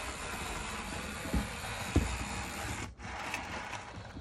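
Rivarossi 4-4-0 model locomotive running on its track, the tender-mounted motor driving worn worm and drive gears with a steady mechanical whirr and rubbing. Two short knocks come about a third of the way and halfway through as the model is handled.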